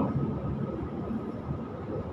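Steady background rumble and hiss, with a faint steady hum.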